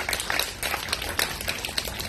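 A small audience clapping, many separate hand claps heard distinctly, applauding an award winner as her name is read out.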